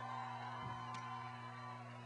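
Quiet lull on a live stage sound system: a steady electrical hum with a faint held musical tone fading away, and a light tap about a second in.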